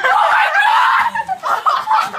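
Loud, high-pitched laughter: one long burst of laughing, then short broken laughs.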